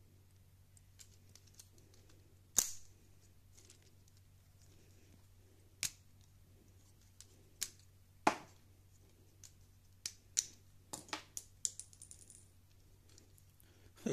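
Lego Technic plastic parts clicking and knocking together as they are handled: sharp single clicks at irregular intervals, with the loudest about two and a half and eight seconds in and a quick run of clicks near the end, over a faint low hum.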